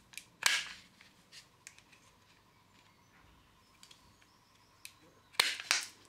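Hand-held plastic pipe cutter snipping through thin blue plastic tubing: a sharp snap about half a second in and another about five seconds later, as each tube is cut through, with a few faint ticks of handling between.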